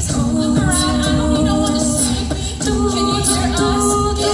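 Female a cappella ensemble singing live: several voices hold chords that shift about two and three seconds in, with a steady beat underneath.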